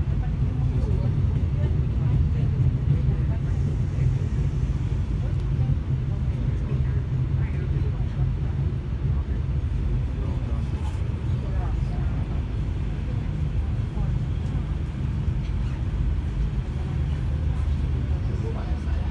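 Steady low rumble of a passenger train heard from inside the carriage, with indistinct voices in the background.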